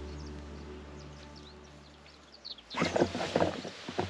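Background music with sustained notes fading out over the first two and a half seconds, then irregular rustling and handling noise near the end.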